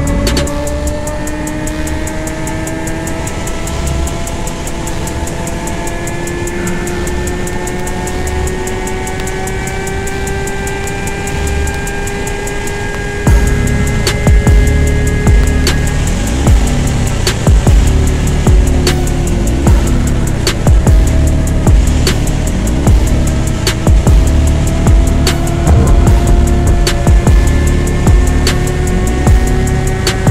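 Honda CBR600RR inline-four engine running at high revs under sustained acceleration, its pitch rising slowly. Music with a drum beat plays over it, the beat coming in much louder about halfway through.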